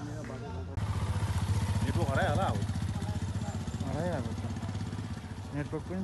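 A motorcycle engine running with a rapid, even pulse, cutting in suddenly about a second in. Voices call out twice over it.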